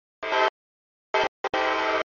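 Locomotive air horn sounding a chord of several steady notes in broken blasts, as for a grade crossing: a short blast, another short one about a second in, then a longer one that is cut off sharply at the end. Between the blasts the sound drops out completely.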